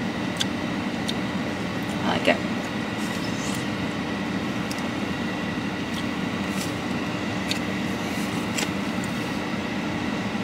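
A steady hum inside a car cabin, typical of an idling engine and the air-conditioning fan. It is broken by light clicks and scrapes from a plastic fork against a molded-fibre takeout box.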